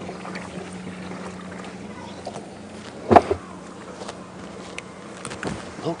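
Steady low motor hum, with a single loud knock about three seconds in.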